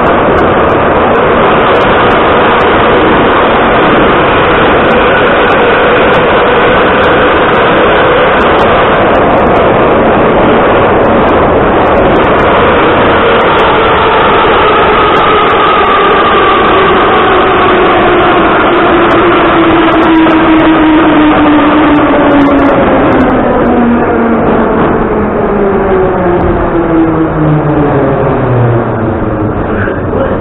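Interior running noise of an Ezh3 metro car: a loud, steady rumble and rattle with the whine of the traction motors and gearing. Over the second half the whine falls steadily in pitch as the train slows down.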